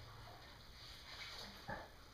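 Quiet room tone: a low steady hum and a faint hiss, with one brief faint sound near the end.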